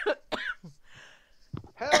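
Laughter trailing off, a short pause with a faint breath, then a short cough just before laughing resumes. The voice is still choked up from dust.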